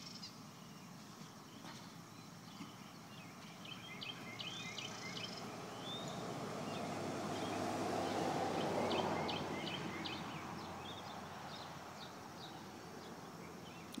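Small birds chirping in the background, short repeated high chirps, with a low, noisy swell that builds and fades over about four seconds midway.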